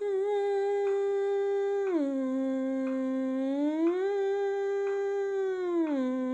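A woman humming one long unbroken sliding scale with her lips closed. She holds a note, glides smoothly down to a lower one about two seconds in, slides back up about two seconds later, and glides down again near the end. Faint ticks come about every two seconds.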